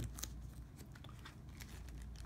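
Faint handling noise: a few soft clicks and rustles as a leather sneaker is turned over in the hands, over a steady low room hum.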